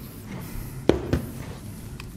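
Two short knocks on a kitchen worktop about a second in, the first the louder, with faint handling noise of crumbly pastry dough being worked by hand around them.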